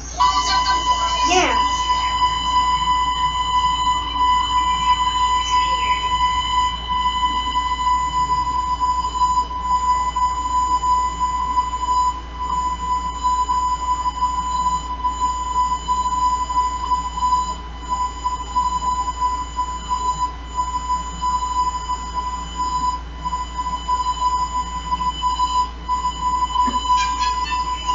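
A steady, high-pitched beep tone with a slight waver, playing through a small TV's speaker while the screen is blank white. A short falling sweep sounds just after the tone begins.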